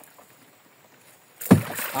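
A large toman (giant snakehead) thrashing at the surface right beside the boat on a short line, a sudden loud splashing that starts about one and a half seconds in.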